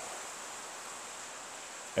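Steady hiss of rain falling on a metal shed roof.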